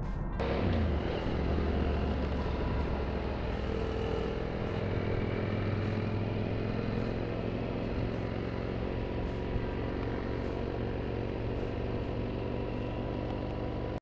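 Motorcycle engines running and wind noise at riding speed, picked up by a camera on a moving motorcycle with a second motorcycle riding alongside. The sound cuts in about half a second in and stays steady, with a short rise in engine pitch soon after.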